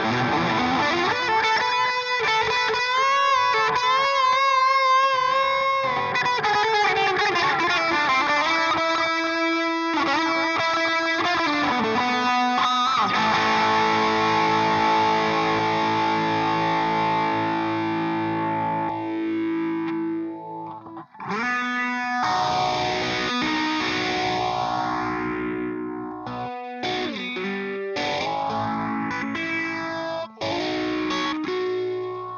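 PRS Custom 24 electric guitar played through overdriven amplification with effects: a lead line with bent, wavering notes for the first few seconds, then long held notes ringing out. After a brief break about two-thirds in, it turns to choppy, stop-start chords.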